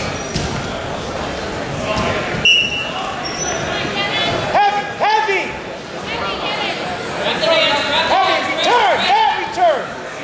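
Wrestling shoes squeaking on the mat in short rising-and-falling chirps as two wrestlers scramble on their feet, coming thick and fast in the last few seconds, with shouts from the sidelines.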